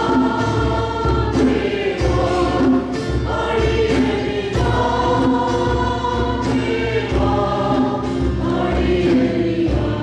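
Church congregation singing a worship song together, many voices on long held notes, backed by steady instrumental accompaniment.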